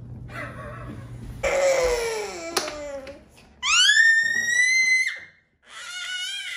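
A young child's loud vocalizing: about a second and a half in, a wailing cry that falls in pitch. Then comes a high-pitched shriek, held for about a second and a half.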